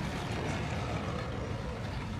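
A steady, noisy low rumble with hiss over it.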